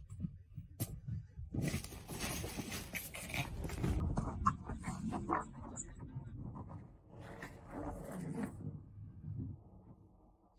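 A French bulldog and a cat play-fighting: the dog's breathing and vocal noises mixed with scuffling against the bedding, in irregular bursts from about a second and a half in until shortly before the end.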